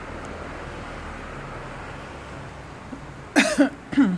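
A person coughing once, short and loud, near the end, over steady low background noise.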